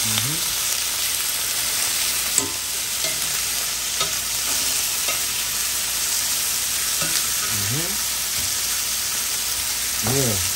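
Chicken tenders sizzling steadily in hot oil in a cast-iron skillet while being turned with metal tongs, the tongs clicking against the pan now and then, most sharply about two and a half seconds in.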